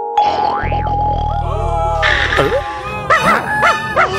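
Cartoon sound effects over music: a springy boing about half a second in, a low buzzing for about two seconds, and many sliding, warbling tones. Near the end the cartoon characters laugh in a quick run of rising-and-falling yelps.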